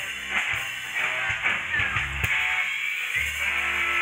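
Live rock-and-roll band playing: electric guitars, bass guitar and drum kit, with drum hits through the first part and a held low bass note and chord setting in about three seconds in.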